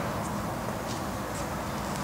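Steady background hum and hiss of a large indoor space, with a few faint ticks; no engine or other distinct sound stands out.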